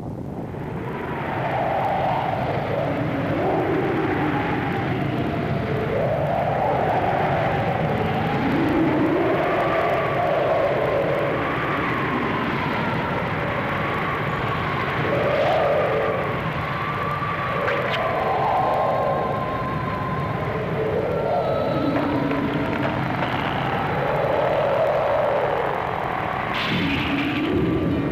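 Sound effect for a hydrogen-bomb blast in an animated film: a loud, steady roar of noise with deep low content, swelling in over the first second or two. Wavering tones rise and fall over the roar throughout, like wind in a storm.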